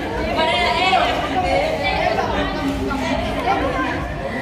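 Several people talking over one another: the chatter of onlookers at a sparring bout.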